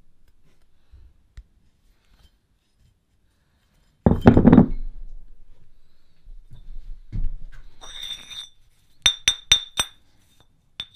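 A rusty iron weight plate set down on a cloth-covered bench with a dull thunk about four seconds in, followed by softer knocks. Near the end, two iron weight plates are knocked together four times in quick succession, each a sharp ringing metallic clink.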